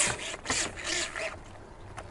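Telescopic water-fed pole being slid out while its water-fed solar brush rubs across a wet solar panel: a short knock at the start, then a faint rushing rub of bristles and running water that fades away.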